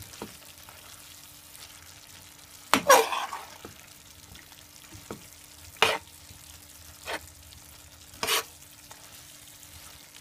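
Metal tongs stirring a hot pan of beef and broccoli in sauce: a few sharp clinks and scrapes against the pan, the loudest about three seconds in, over a faint sizzle.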